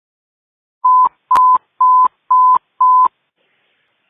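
Fire dispatch alert tone over the radio: five short beeps of one steady mid-pitched tone, about two a second, sounding the alert ahead of a dispatch for a grass fire.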